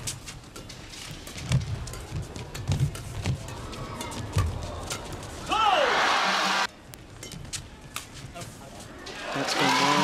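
Badminton doubles rally: sharp racket strikes on the shuttlecock and players' footwork on the court. Midway the rally ends, and a loud burst of home-crowd cheering lasts about a second and cuts off abruptly.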